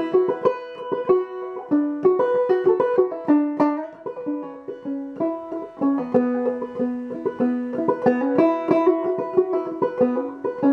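Five-string banjo played clawhammer style in double C tuning, capoed at the fourth fret: an unaccompanied instrumental break of quickly struck, ringing notes in a steady rhythm.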